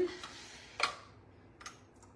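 Two short, sharp clicks of small hard objects handled on a craft table: a louder one just under a second in and a fainter one near the end.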